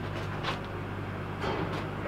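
A steady low mechanical hum with no distinct events, in a pause between speech.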